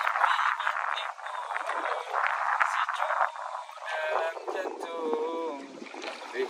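Water washing and splashing around a small wooden rowing boat for the first few seconds. A man's voice comes in about two-thirds of the way through.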